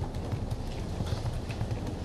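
Typing on a computer keyboard: a quick, irregular run of soft, dull keystroke thuds.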